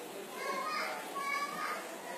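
Faint, high-pitched voices in the background, two short phrases, much quieter than the main narration.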